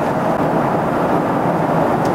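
Steady cabin noise of a Boeing 777-300ER airliner in flight: an even rush of airflow and engines heard from inside the cabin.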